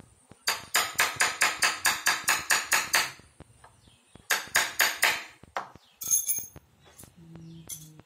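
Small hammer tapping a steel chasing punch on a thin German silver sheet to emboss a design: a fast run of about fourteen sharp metallic taps, roughly six a second, then a second run of about five taps, then a few lighter clinks.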